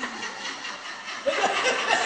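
Soft, breathy laughter, with a faint voice coming in about halfway through.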